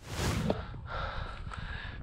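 A person breathing hard close to the microphone: a loud breath out at the start, then quieter breathing.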